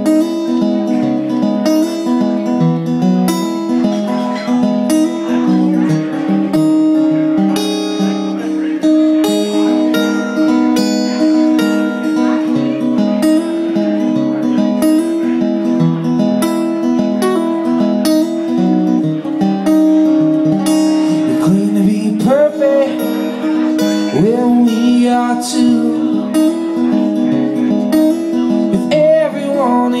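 Acoustic guitar strummed in a steady, repeating chord pattern: the instrumental intro of a song, before the vocals come in.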